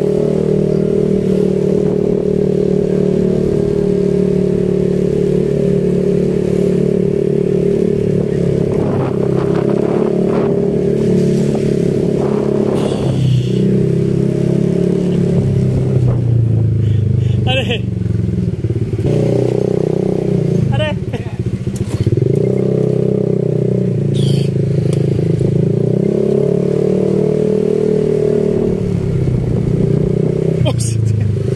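Small motorcycle engine running while riding, heard from the saddle, its pitch dipping and rising again with changes of speed a little past the middle and near the end. A few short, high sounds break in now and then.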